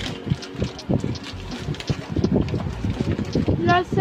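Close-up eating noises: chewing and handling of a plastic snack-bar wrapper, heard as irregular low thumps and rustles. A voice starts near the end.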